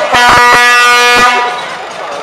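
Air horn on a parade float, sounding one long, loud blast that starts right away and cuts off about a second and a half in.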